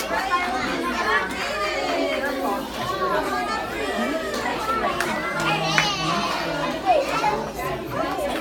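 Many young children chattering and calling out at once, their voices overlapping, with a high-pitched squeal a little past halfway.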